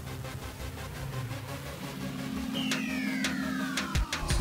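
EnviroKlenz air purifier's fan motor running with a steady hum that grows louder as its speed dial is turned up toward max, with three clicks in the second half. About two and a half seconds in, a pair of whistle-like tones sweep downward.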